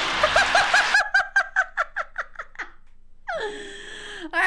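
A woman laughing hard in a quick run of short giggles that trails off after about two and a half seconds. Noisy background sound under the first second cuts off suddenly. A drawn-out voiced sound follows near the end.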